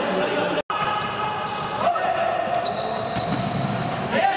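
Live sound of a futsal game on a hardwood court in a large, echoing hall: the ball being kicked and bouncing, with players calling out. The sound drops out for an instant about half a second in.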